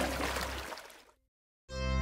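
A soft rushing, water-like sound fading away over about a second, a short silence, then the music of the next nursery song starting with struck keyboard-like notes just before the end.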